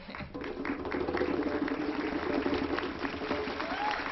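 A small crowd of guests clapping, with music holding a steady chord underneath from just after the start until near the end.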